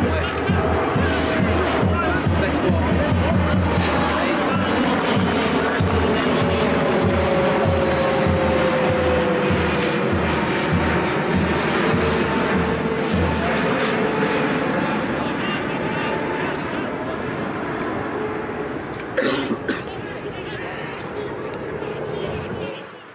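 Crowd of football spectators shouting and cheering together, many voices at once, loud from the start and slowly dying down.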